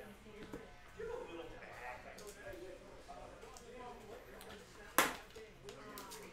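Faint speech murmuring in the background, with light ticks of cards being handled and one sharp knock about five seconds in.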